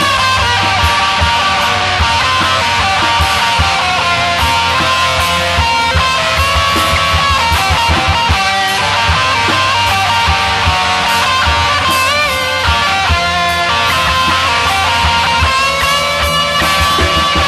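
Instrumental break of a rock song with a Romani flavour: a lead melody of held notes with pitch bends plays over guitars and a steady, driving drum beat.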